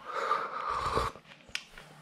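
A person slurping hot broth from a bowl for about a second, followed by a faint click.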